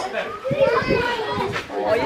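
Indistinct chatter from children and adults talking, with no other sound standing out.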